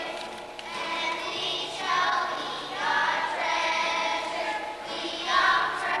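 Children's choir singing together in unison phrases.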